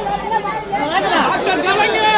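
Crowd chatter: many men's voices talking and calling out over one another, loud and close.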